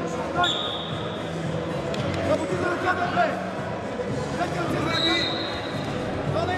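Shouting from coaches and spectators at the side of a wrestling mat, echoing in a sports hall, with two short, steady high-pitched tones, one about half a second in and a shorter one about five seconds in.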